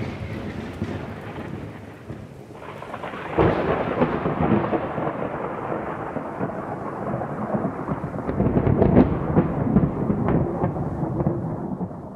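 Thunderstorm sound effect: a sudden thunderclap about three and a half seconds in rolls into a long crackling rumble over rain, fading out near the end.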